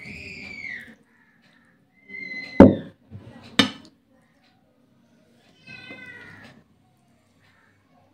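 A domestic cat meowing: a rising-and-falling meow at the start, a short call just after two seconds and another meow about six seconds in. Two sharp knocks, the loudest sounds, come about two and a half and three and a half seconds in.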